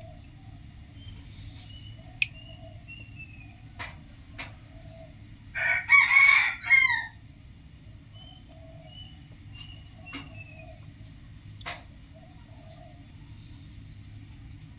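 A rooster crows once, a loud call of about a second and a half starting some six seconds in. Around it are a faint steady high whine and a few soft clicks.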